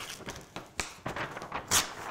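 Soft irregular taps and rustles of a sheet of paper and a pen being handled, a few separate clicks over two seconds.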